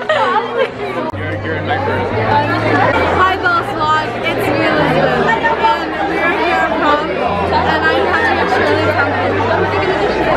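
Many voices chattering at once over music with a deep bass line of held notes that change every second or so.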